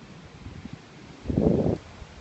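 A muffled rumble on a phone's microphone as the phone is swung about, about half a second long, a little past the middle.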